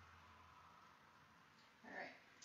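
Near silence: quiet room tone, with one brief, louder sound right at the end.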